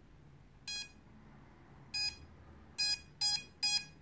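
A quadcopter's electronic speed controllers beeping through their brushless motors during ESC calibration, just after the throttle has been lowered: two single short beeps, then three close together near the end.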